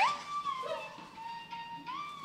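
P-pop song playing back, with a held high melody line that slides up at the start, steps down about a second in and climbs again near the end.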